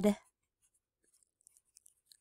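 A few faint, short scratches of a pen writing on lined notebook paper, starting about a second and a half in.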